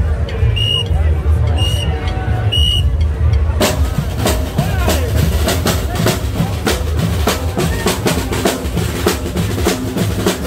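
A street marching band's drumline of snare drums and bass drum starts playing suddenly about three and a half seconds in, in a fast, dense run of strokes. Before that there is crowd chatter with a short high pip about once a second.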